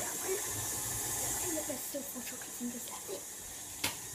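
Faint, distant voices over a steady hiss, with one sharp click just before the end.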